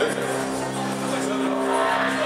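A steady, sustained chord held on an electric keyboard, amplified through the stage speakers.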